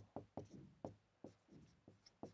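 Marker pen writing on a board: about seven faint, short strokes.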